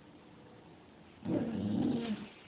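A nine-month-old bull terrier "talking": a short, low, wavering vocal sound from the dog starting about a second in and lasting under a second.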